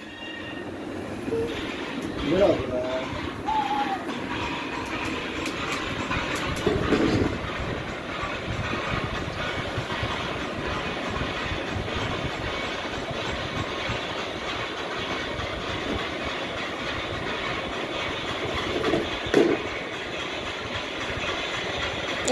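A steady rattling, rumbling noise with a faint high ring runs throughout, with a small child's short vocal sounds a few times over it.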